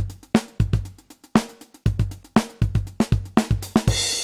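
BFD Eco software drum kit playing back a groove from its default startup preset: sampled acoustic kick, snare and hi-hat in a steady beat at 119 beats per minute.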